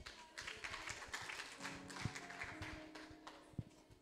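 Faint, irregular tapping and scattered claps from the congregation. A soft, steady musical note is held from about one and a half seconds in.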